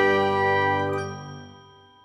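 Closing chord of an animated logo jingle: several bright chime tones ringing together, then fading away over the last second.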